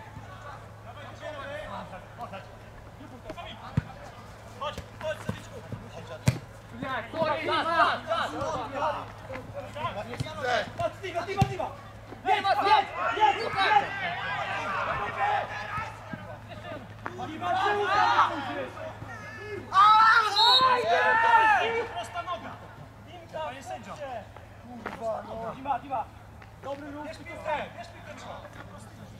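Footballers shouting and calling to each other during play, in several loud bursts, with a few sharp thuds of a football being kicked.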